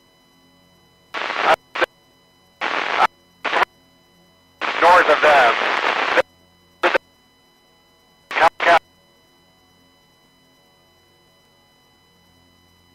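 Marine VHF radio traffic: a string of short, clipped transmissions that cut in and out abruptly, with a snatch of garbled voice about five seconds in, over a faint steady whine.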